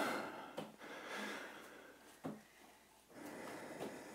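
A person breathing hard after a handstand jump, with huffed exhales and a couple of short soft knocks.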